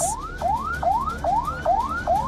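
Emergency-vehicle siren on an Edhi ambulance, rapid rising sweeps that climb in pitch and snap back down, repeating about two and a half times a second.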